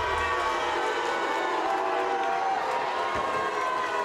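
Large studio audience cheering and screaming over loud music. The heavy bass beat drops out about a second in.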